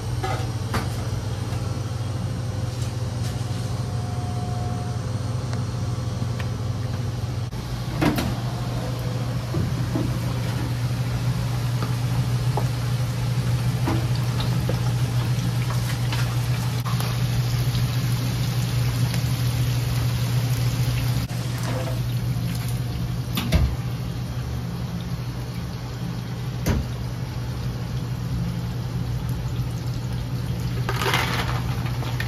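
A steady low machine hum of kitchen equipment, over the even sizzle of French fries bubbling in a commercial deep fryer's oil. A few sharp metallic clinks of the wire fryer baskets come about eight seconds in and twice more in the last third.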